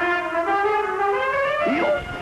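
Jazz trumpet playing long held notes that step up in pitch, with a short bend near the end.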